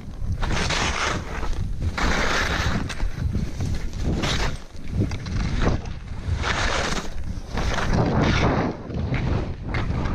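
Skis hissing and scraping through soft snow in a run of turns, the noise swelling with each turn every second or two, over a steady rumble of wind on the camera microphone.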